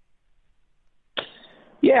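Near silence, then about a second in a short sharp intake of breath over a phone-quality line, followed by a man saying "Yeah".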